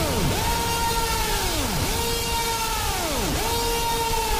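Hard techno breakdown with the kick drum dropped out: a synth tone that swoops up, holds, then glides down, repeating about every one and a half seconds over a wash of noise.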